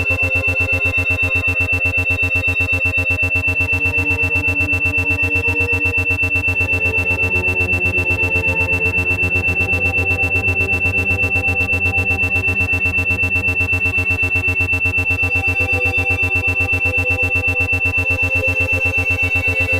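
An 8 Hz alpha brainwave-entrainment track: isochronic tones pulsing about eight times a second, with a steady high tone and a low pulsing hum, over soft ambient synth pads that drift slowly in pitch.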